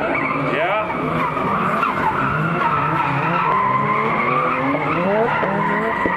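Two drift cars, a Nissan S13 and a BMW E30, sliding sideways in tandem: engines held at high revs, rising and falling with the throttle, over steady tyre squeal and skidding.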